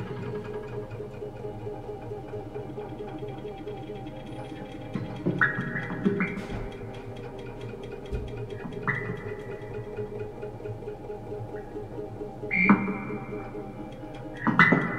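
Soft free-improvised live music from a saxophone, guitar and laptop-electronics trio: a low, buzzing drone with a fluttering texture. Short high held tones enter about five seconds in and again near nine seconds, and a louder swell of them comes near the end.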